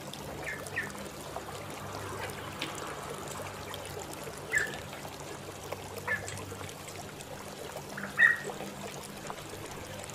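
Young turkeys, chickens and ducklings pecking crumbled feed from a metal bowl, a steady grainy rattle and rustle, with a few short high peeps from the birds, the loudest near the end.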